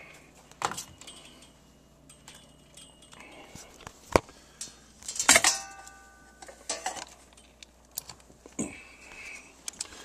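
Scattered handling clicks and metallic clinks as an electrical plug is worked into a power strip, with one sharp knock about four seconds in and a short jangling clatter with brief ringing just after five seconds.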